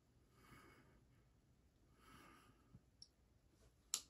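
Near silence: two faint breaths, with a few soft clicks in the last second.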